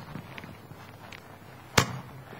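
Quiet room tone, broken near the end by a single sharp click.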